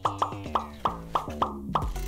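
A quick run of about eight cartoon 'pop' sound effects, one every quarter to third of a second, each a short pitched pop that fades fast, over a low background music bed.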